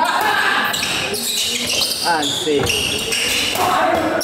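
Badminton rally: rackets striking the shuttlecock several times, the sharp hits echoing in a large sports hall.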